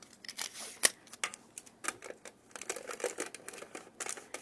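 Clear tape pulled from a small handheld dispenser, torn off and pressed down onto tin foil and a cardboard cereal box. It comes as a run of short clicks, crinkles and rustles, the sharpest about a second in.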